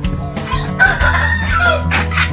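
A rooster crowing once over background music. The crow starts about half a second in and lasts over a second, with a wavering, bending pitch.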